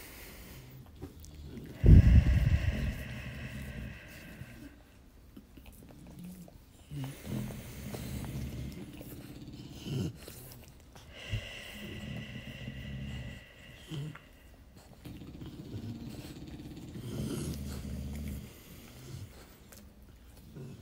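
Slow, paced breathing, in through the nose and out through the mouth, with dogs breathing and snoring audibly along with it. The breaths swell and fade every few seconds, and the loudest comes about two seconds in.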